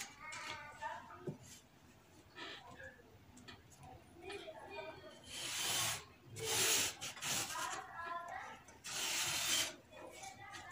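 Chalk drawn along a wooden straight ruler across cotton print fabric to mark a pattern line: three short scraping strokes in the second half, the last near the end.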